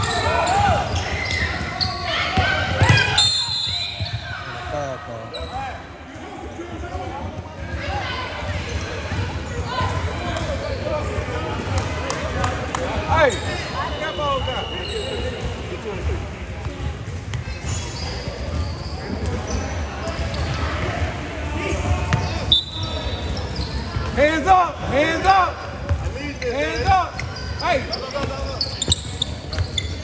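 Basketball game sounds in a gym: the ball dribbling and bouncing on the hardwood with many short knocks, voices from the bench and crowd, and shoes squeaking on the court, most in a cluster near the end. Everything echoes in the large hall.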